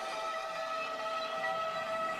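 Electronic dance-music breakdown with no beat: a steady, whistle-like synth drone of several held tones over a wash of hiss.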